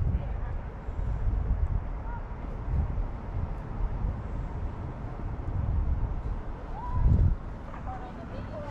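Wind buffeting the microphone as a low, uneven rumble, with a stronger gust about seven seconds in.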